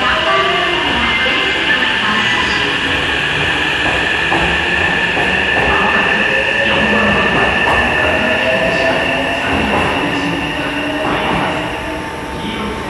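Hankyu electric train pulling out of an underground station platform. Its motor whine rises in pitch as it speeds up, with wheels clacking over rail joints, and the sound falls away as the last car clears near the end.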